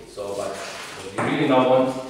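Speech: a man's voice in two short phrases, the words not made out.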